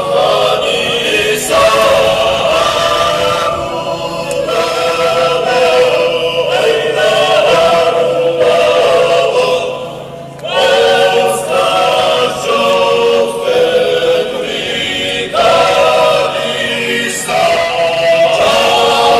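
A choir of voices singing a chant in long held phrases, with a brief break about ten seconds in.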